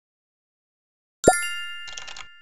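Silence, then a little over a second in a sudden bright chime-like ding sound effect with a short low downward swoop under the strike, its several high tones ringing on and slowly fading. A short run of rapid clicks, like keyboard typing, starts under the ringing near the end.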